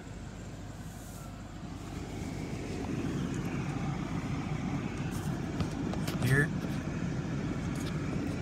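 Low steady hum of a BMW 650i's 4.4-litre V8 idling, heard from inside the cabin, getting somewhat louder about two seconds in. A brief voice sounds about six seconds in.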